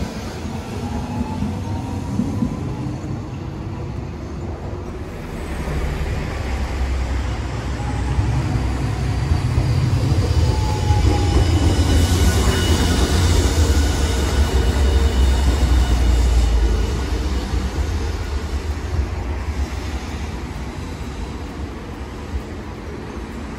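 Hiroshima Electric Railway Green Mover LEX low-floor tram passing close by: the low rumble of its wheels on the street-running rails builds, is loudest between about 11 and 17 seconds in, then fades away.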